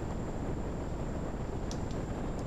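Steady wind-like rumble and hiss on a microphone, with a faint high whine running under it and a couple of faint ticks near the end.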